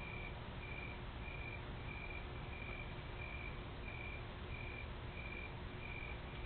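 An evenly repeating high-pitched beep, about one and a half beeps a second, over a steady background hiss and hum, as picked up by an outdoor security camera's microphone.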